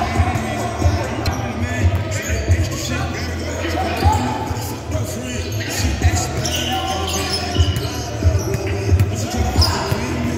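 Basketball bouncing on an indoor gym floor during play, a string of irregularly spaced thumps from dribbling and passes.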